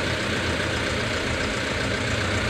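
JMC light truck's engine running steadily, a low even hum heard from inside the cab.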